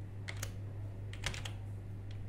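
Computer keyboard keystrokes while typing code: two separate key presses, then a quick run of several more.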